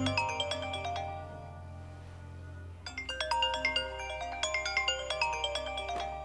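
Mobile phone ringtone playing a quick, tinkling marimba-like melody. It fades out about a second in and starts again about three seconds in, over a low steady drone.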